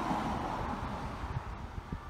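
Wind buffeting the microphone, a rough low rumble, with a rushing swell in the first second.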